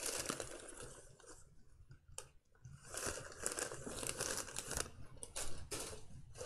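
A plastic bag crinkling and rustling as it is handled. It eases off for about a second partway through, with one click, then starts again, with a few sharper clicks near the end.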